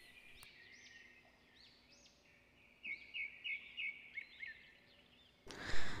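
Faint bird calls: scattered rising-and-falling chirps, with a quick run of short repeated chirps around three to four and a half seconds in. A rush of hiss-like noise starts near the end.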